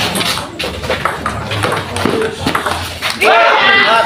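Table tennis ball clicking off paddles and the table during a rally, with people talking over it. Near the end a man's voice calls out loudly.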